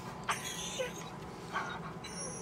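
Akita–husky–Rottweiler mix dog whining in a few short, high-pitched whimpers, impatient while being made to wait for a bone.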